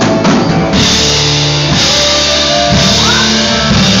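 Live church band playing a hymn loudly: drum kit beats with cymbals over steady bass notes and guitar.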